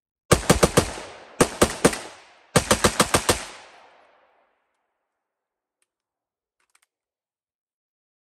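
Brownells BRN-4 short-stroke-piston rifle, fitted with a SureFire three-prong WarComp muzzle device, fired in three rapid strings of about four, three and six shots. Each string dies away in an echo.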